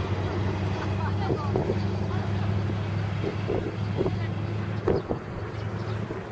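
Steady low hum of an idling vehicle engine, with wind noise on the microphone and brief snatches of people's voices a few times.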